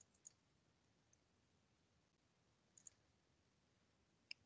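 Near silence, broken by a few faint, short clicks: two near the start and a quick pair near the end.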